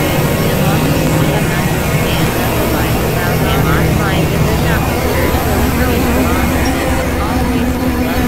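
Experimental electronic noise and drone music: a steady, dense low rumble under many short warbling pitch glides and faint steady high tones.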